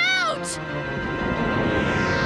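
Cartoon sound effects over background music: a brief cry that slides up and down in pitch, then a broad rushing noise that swells about half a second in and stays loud.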